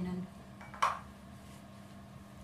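A single sharp clink of a dish being set down on the table, about a second in.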